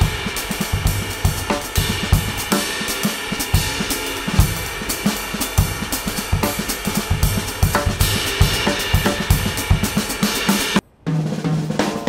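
Jazz drum kit playing a busy pattern of snare, bass drum and cymbals. It breaks off abruptly near the end and other music starts.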